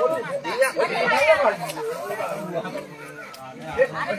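People talking, voices overlapping in the first half and growing quieter near the end.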